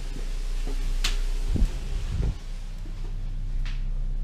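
A light switch clicks about a second in, followed by two dull handling bumps, the first the loudest sound, and a fainter click near the end, all over a steady low electrical hum.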